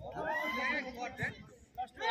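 Men's voices calling out, with a drawn-out, wavering call in the first second and a few short, quieter calls after it.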